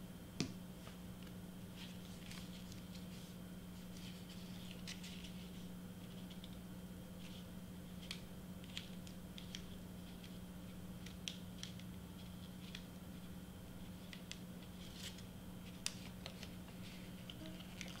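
Faint scattered taps, clicks and rustles of a photo-paper candy-bar wrapper being handled and pressed by hand, with one sharper click just after the start, over a steady low hum.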